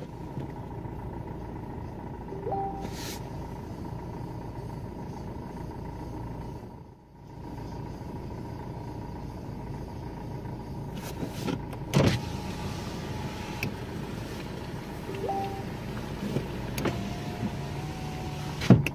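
Steady low engine and road rumble heard from inside a car in slow traffic. There is one sharp knock about twelve seconds in and a few small clicks near the end.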